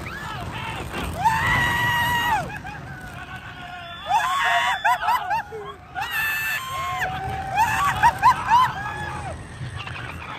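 Roller coaster riders screaming: several long, high screams and whoops that rise and fall, overlapping through the ride, over a steady low rumble.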